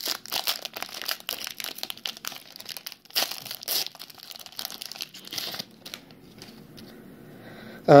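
A plastic-foil trading-card pack wrapper crinkles as it is torn open and the cards are slid out. There are a couple of sharper crackles about three seconds in, and the sound drops away for the last two seconds.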